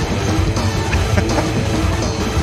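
Live hard-rock band recording playing loudly: distorted electric guitars over bass and drums in a dense, driving mix.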